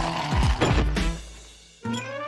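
Cartoon soundtrack music with quick rattling, falling sound effects in the first second. It fades away, and a rising, whistle-like glide starts just before the end.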